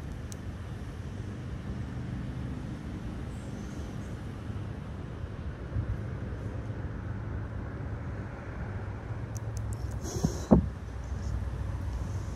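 Steady low rumble of road traffic passing at a distance, with a faint engine hum in the first few seconds. A single short knock comes near the end.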